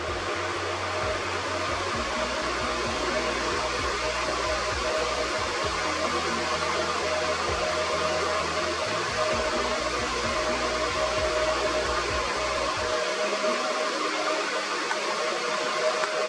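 Outro music: a loud, noise-heavy electronic track with a sustained hiss-like wash and bass notes that change every few seconds. The bass drops out near the end, leaving the wash.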